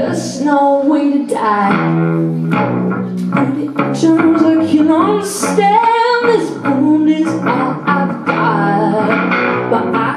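A woman singing over her own strummed acoustic guitar, holding and bending long notes without clear words.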